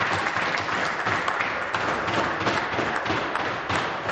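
Members of a legislative chamber applauding: a dense, steady patter of many hands clapping.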